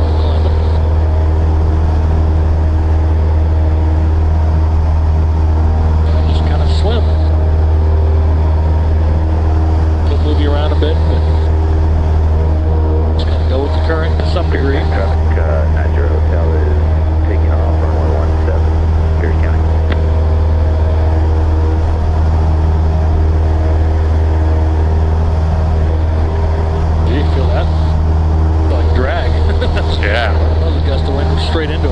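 Cessna 172's piston engine and propeller droning steadily at climb power, heard inside the cabin.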